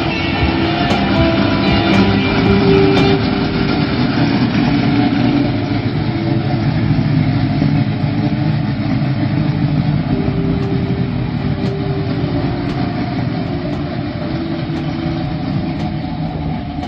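Big-block Chevy V8 of a 1966 Chevelle station wagon drag car driving away, its sound slowly fading as it goes.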